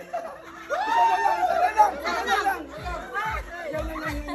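Several people talking and calling out over each other, then background music with a thudding bass beat about twice a second coming in near the end.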